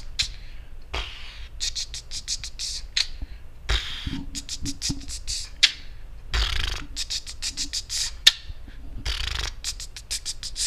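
Mouth beatboxing: clusters of rapid, sharp 'ts' clicks and hisses, several a second, with a broader breathy puff about every two and a half to three seconds that marks the beat.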